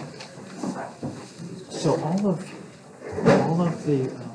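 Indistinct voices talking in a small room, in two stretches of a second or so each, with a few short knocks of handling in between.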